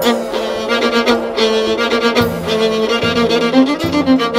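Instrumental passage of a folk-band recording: a violin plays the melody over sustained lower notes, with regular percussion hits.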